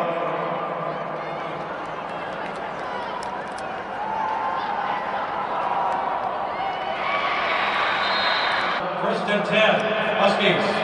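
Stadium crowd of spectators: a steady din of many voices with scattered shouts and a few claps, swelling about four seconds in as a play runs.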